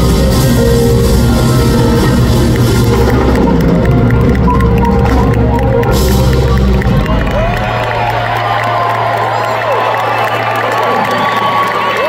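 Live smooth-jazz band with drums, bass, flute and piano playing the end of a piece; the band stops about seven seconds in. A low note is held under the audience, who then cheer and whoop.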